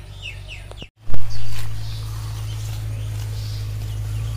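Birds chirping in short falling calls for about the first second, then a sudden loud thump and a steady low hum.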